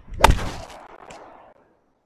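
Golf iron striking a ball off the tee: one sharp crack about a quarter second in, followed by a fading rush of noise that dies away within about a second.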